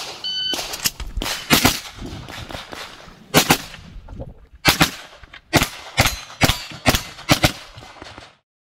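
A shot-timer start beep, then a 9mm blowback pistol-calibre carbine fired in quick pairs, about a dozen shots in seven seconds. The beep comes about a quarter second in and is short, and the last shots fall near the end.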